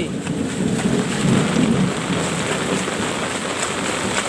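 Heavy rain pouring steadily, a dense even hiss of downpour.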